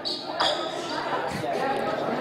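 Basketballs bouncing on a hardwood gym floor, with a couple of thuds, in a reverberant gym with faint voices in the background.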